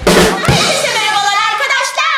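Upbeat drum-kit music opening with a loud drum hit and a second hit about half a second in, with voices over it.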